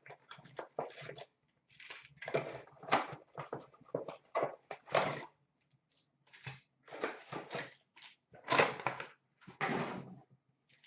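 Cardboard trading-card box being opened and foil card packs pulled out and set down on a glass counter: a run of irregular rustles, crinkles and scrapes, the loudest near the end.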